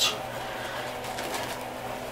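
Shaving brush swirling lather over bearded stubble, a steady soft swishing; the lather is over-fluffy and airy from softened water.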